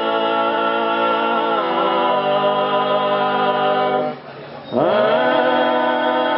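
Sardinian cuncordu, a four-man unaccompanied vocal group, singing held chords in close polyphony. Just after four seconds in the voices break off briefly, then re-enter with a slide up into the next chord.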